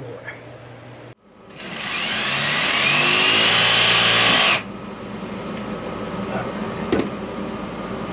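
Cordless power saw cutting through PVC drain pipe: its whine rises slightly for about three seconds, then cuts off suddenly. A steady hum follows, with a single knock near the end.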